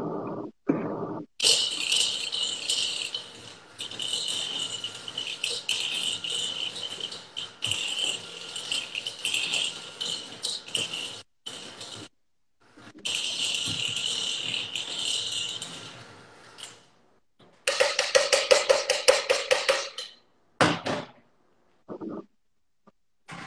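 Electric hand mixer beating butter, sugar and egg together in a bowl, a steady whirring with the beaters rattling in the bowl, fast and loud near the end. The sound cuts out suddenly several times.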